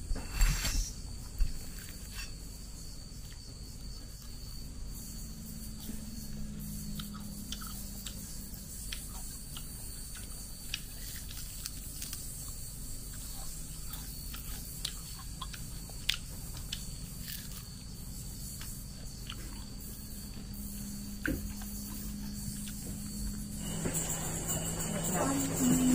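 Chewing on skewered cicadas, with scattered small crunches and clicks throughout, over a steady low hum.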